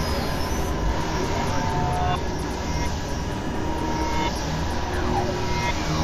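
Experimental synthesizer noise music: a dense, steady wash of droning noise with a few short held tones and a falling pitch glide about five seconds in.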